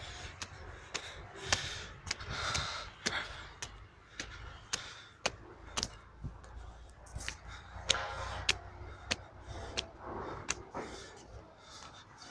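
Footsteps on stone stairs, sharp steps about two a second, with heavy breathing from the climber, who is tired from the climb.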